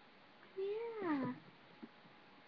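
A single meow, under a second long, that rises slightly and then slides down in pitch.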